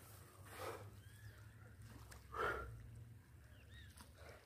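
Quiet outdoor sound with two short breathy puffs from a man, about half a second and two and a half seconds in, and a few faint bird chirps.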